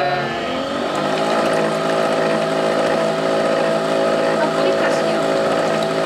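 Nespresso Vertuo capsule machine running its cleaning cycle, with water streaming from its spout into a glass: a steady motor hum, rising slightly in pitch just at the start.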